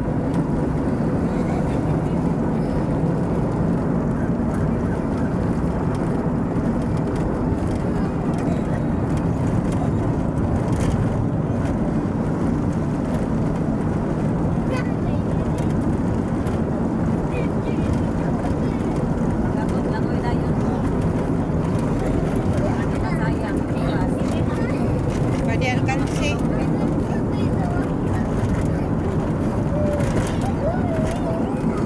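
Steady engine and road noise of a moving vehicle, heard from inside the cabin.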